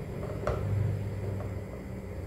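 Silicone spatula stirring a thick, simmering cassava broth in a large pot: soft, low sloshing with one short click about half a second in.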